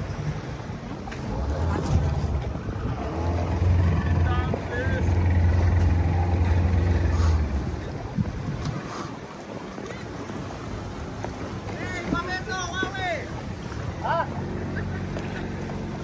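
A small open boat's outboard motor running with a steady low hum that grows louder from about two seconds in and cuts away near eight seconds. Water and wind noise continue after it.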